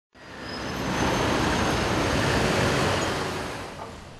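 Steady rushing street-traffic noise that fades in over the first second and fades out toward the end.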